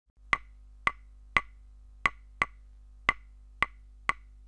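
Wooden percussion clicks: seven sharp strikes, each with a short ringing tone, in an uneven rhythm about half a second apart, over a faint low hum.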